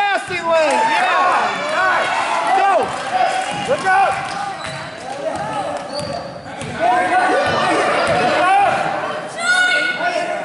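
Basketball dribbled on a hardwood gym floor, with many short sneaker squeaks as players cut and stop, and spectators' voices echoing in a large gym.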